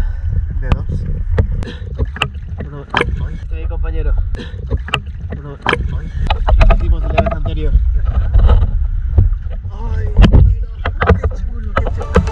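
Sea water lapping and splashing against a camera held at the surface, with many sharp slaps and a constant low rumble of waves and wind on the microphone.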